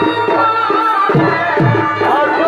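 Chhau dance accompaniment: deep drum strokes about twice a second, each dropping in pitch, under a wavering, sustained melody line.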